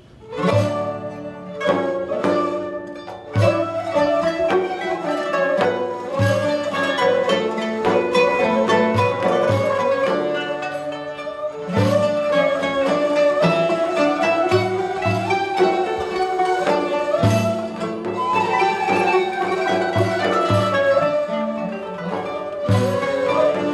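Traditional Turkish-Arab ensemble music starting about half a second in: an oud plucked with accented low notes, together with a ney flute and bowed strings.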